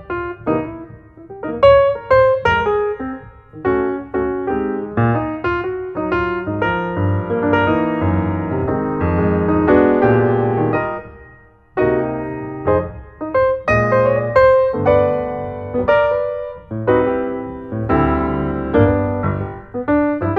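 Background piano music, notes struck one after another and dying away, with a short break about halfway through.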